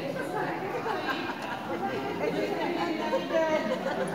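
Chatter of several voices talking over one another, with no clear words.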